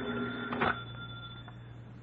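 Telephone ringing: a steady, held ring that fades out about a second and a half in.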